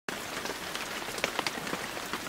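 Water drops falling and splashing, like light rain: an even hiss with many scattered drip sounds, the sound effect of an animated logo.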